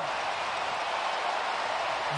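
Steady, even noise of a large stadium crowd.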